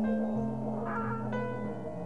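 Live improvised music: a long held low note, with short, wavering higher notes entering about a second in.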